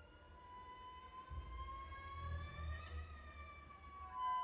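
Contemporary chamber music, quiet: a sustained high note slides slowly upward in pitch, peaks about three seconds in and glides back down, over a faint low rumble.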